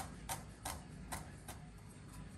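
Chef's knife chopping thyme leaves on a wooden cutting board: a run of short knocks of the blade on the board, about three a second, getting fainter toward the end.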